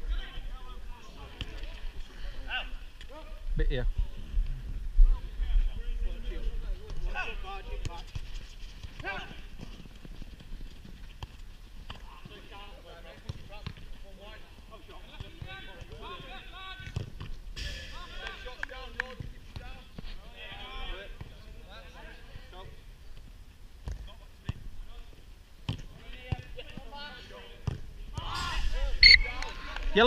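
Outdoor five-a-side football play on artificial turf: players shouting and calling across the pitch, with several dull thuds of the ball being kicked, over a steady low rumble on the microphone.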